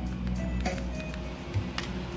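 Recorded music played from a MiniDisc on a Lo-D AX-M7 MD/CD receiver, heard through its speakers at low volume as the volume is being turned down.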